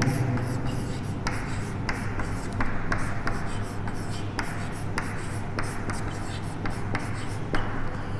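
Chalk writing on a chalkboard: short irregular scratches and taps of the chalk as a word is written, over a steady low hum.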